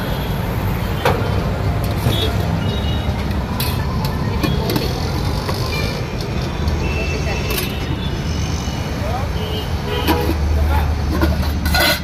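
Roadside traffic: vehicle engines rumbling steadily with a few short horn toots, under background voices. A few sharp clinks of a steel serving ladle against a steel pot come through.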